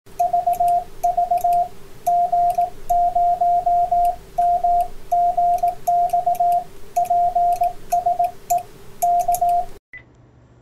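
Morse code (CW) sent as a single keyed tone, with short and long elements in groups, over faint radio hiss, a steady lower hum and occasional crackles. It cuts off abruptly just before the end.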